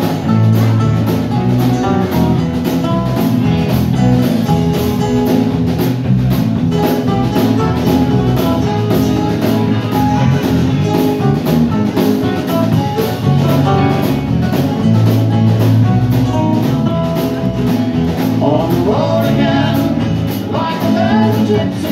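Live country band playing: acoustic and electric guitars, bass guitar, drum kit and Hammond keyboard, with a steady beat.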